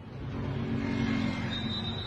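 Car engine and road noise heard from inside the cabin, building gradually as the car moves off. A thin high steady tone joins for the last half second.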